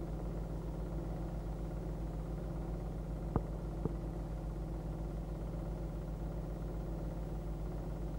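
Steady low electrical hum with a fast, even flutter. Two short clicks come about three and a half seconds in.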